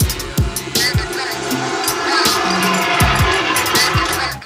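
Hip-hop backing beat with no vocals: deep kick drums that drop in pitch, hi-hats ticking and a held bass line.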